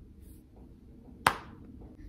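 A single sharp click a little over a second in, against quiet room tone.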